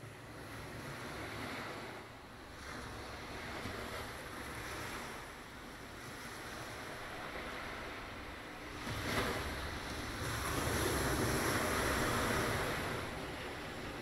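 Ocean surf sound: a soft rushing wash of waves that swells and recedes every few seconds, growing strongest late on. It is played from a sampler as the intro to the song.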